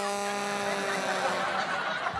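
Sad-trombone "wah-wahhh" gag sound effect: a low, buzzy brass note held for about a second and a half, sagging slightly in pitch, the comic sting for gloom and letdown.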